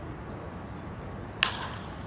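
A bat striking a pitched baseball: one sharp crack about one and a half seconds in, over steady ballpark background noise.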